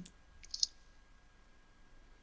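Computer keyboard keystrokes: a few soft key clicks about half a second in as the last letters of a name are typed, and otherwise near silence.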